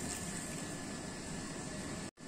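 A thin stream of water pouring into wheat flour in a mixing bowl: a faint, even hiss with no separate splashes.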